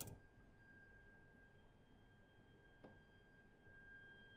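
Near silence: room tone with a faint, steady, high-pitched tone, and one faint click a little under three seconds in.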